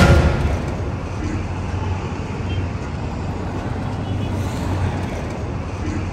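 Busy street ambience: steady traffic noise with a low engine hum, as the music stops at the start.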